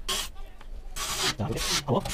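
A few short scrapes and rubs of a computer power supply being pushed into place in a steel PC case.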